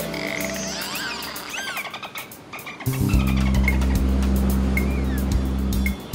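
Dolphin whistles and rapid echolocation clicks layered over music. The whistles rise and fall. About halfway through, a loud, deep sustained chord comes in and the clicks go on over it.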